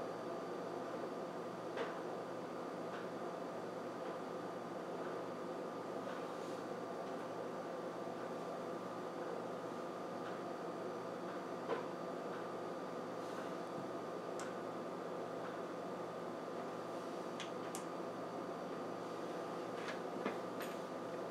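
Steady humming background noise in a small room, with a few faint clicks about 2 s and 12 s in.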